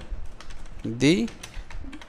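Computer keyboard being typed on: an uneven run of key clicks.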